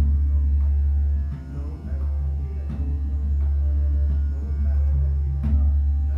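Dhrupad music: a steady drone with pakhawaj-style drum strokes, the loudest strokes falling roughly every two to three seconds.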